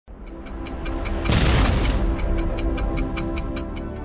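Intro music: held tones over a fast ticking beat of about five ticks a second, with a booming swell about a second in.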